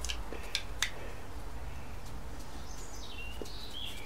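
Quiet greenhouse background with a steady low hum and a few faint light ticks in the first second. A small bird gives a short chirp that falls in pitch near the end.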